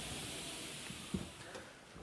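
Faint, steady background hiss that slowly fades, with one soft tick about a second in.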